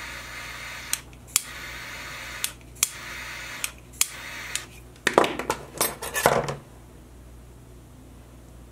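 A lighter is lit again and again, each time with a click and then about a second of steady flame hiss, melting the frayed ends of nylon 550 paracord. After that comes a quick run of clicks and clatter as tools are handled.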